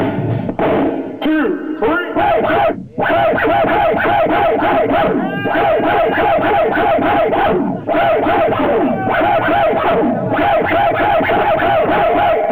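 Hip-hop DJ scratching and cutting vinyl records on turntables over a beat. Chopped snippets of a sample slide up and down in pitch, with a brief drop-out just before three seconds in.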